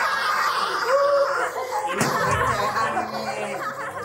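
A group of people laughing loudly together over music, with a low thump about halfway through.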